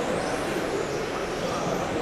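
Several 1/10-scale electric touring cars with 13.5-turn brushless motors racing on an indoor carpet track: a steady wash of motor whine and tyre noise in a large hall.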